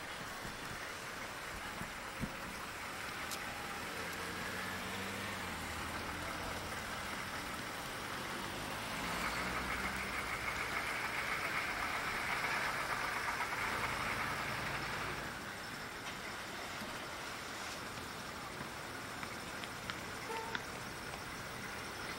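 Street ambience with passing vehicle traffic: a low engine hum in the first part, then a vehicle going by, louder for about six seconds in the middle before fading back to a steady background.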